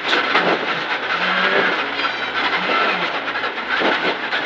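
Rally car engine heard from inside the cabin, its note rising and falling as the driver works the throttle, over a steady rush of gravel and road noise from the tyres.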